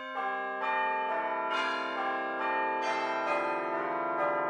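Opening of an instrumental Christmas music track: bell-like chime tones struck one after another, about two a second, each ringing on under the next.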